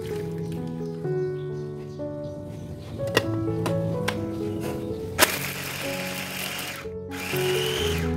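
Clicks as the food processor's lid is locked on, then the motor runs in two pulses, grinding shallots, garlic, candlenuts and spices with water into a paste. Soft piano music plays throughout.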